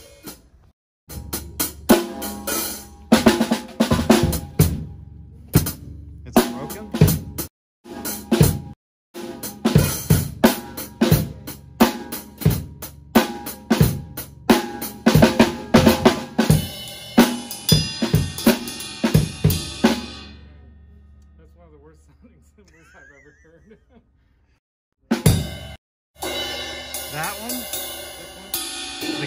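Acoustic drum kit played in a fast solo: rapid snare and tom hits over bass drum, with hi-hat and cymbal crashes. It stops about two-thirds of the way in and the cymbals ring out. After a short pause a cymbal is struck with a drumstick a few times near the end.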